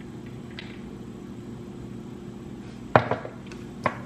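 Steady low hum of room tone, then a sharp knock about three seconds in and a smaller one just before the end, as a glass mason jar of iced coffee is set down on the kitchen counter.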